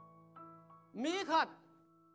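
Soft background music of sustained chords that shift once just after the start, with a single short spoken word about a second in.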